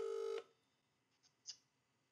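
A short electronic telephone tone, a steady beep of under half a second at the start, then near silence with one faint tick about a second and a half in.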